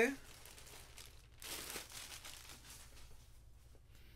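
Faint rustling and crinkling as a folded pair of new jeans is handled and lifted, loudest about one and a half seconds in.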